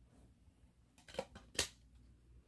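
Four quick sharp plastic clicks from a CD case being handled and opened, starting about a second in, the last one the loudest.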